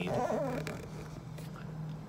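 Steady low hum inside a car, with a faint voice-like sound in the first half-second.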